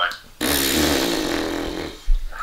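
A man blowing a long raspberry, a buzzing blow through the lips lasting about a second and a half. It starts suddenly and its pitch sags slightly, a scoffing reaction to a question.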